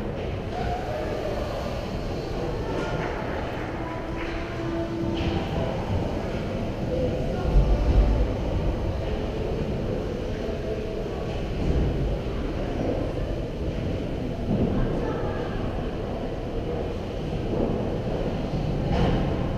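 Ice rink ambience: a steady low rumble with faint, distant voices and scattered scrapes. A heavier low thump comes about eight seconds in.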